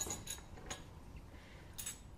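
A few faint, short clinks of small tea glasses and saucers being handled, spaced unevenly, with one more near the end.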